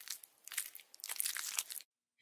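Faint, irregular crunching and chewing of a praying mantis eating a male. The crunches stop shortly before the end.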